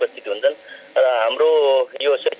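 Speech only: a person talking in a radio programme recording, with short pauses and one drawn-out syllable near the middle.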